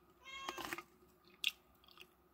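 A cat meows once, a short call rising in pitch, followed about a second later by a single sharp click.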